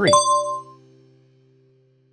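A bright chime sound effect rings out and fades within about a second as the quiz answer is revealed, over a faint low held tone.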